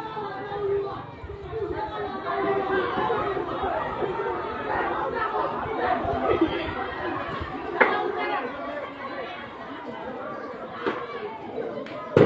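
Indistinct chatter of several voices talking at once, with one sharp crack about eight seconds in.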